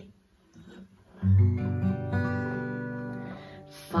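Acoustic guitar: a chord strummed about a second in and left to ring and fade, with a second chord following about a second later.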